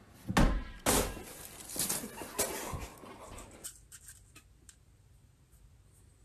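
A few sharp thuds and knocks, followed by a stretch of clattering commotion that cuts off suddenly, leaving only a few faint ticks.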